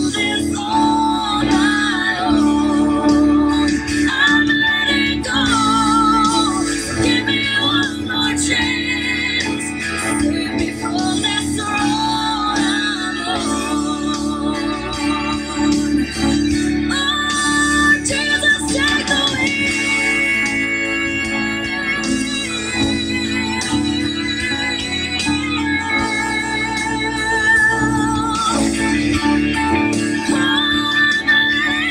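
Electric guitar playing a country ballad's melody in sustained, wavering notes over a backing track with a steady held low chord.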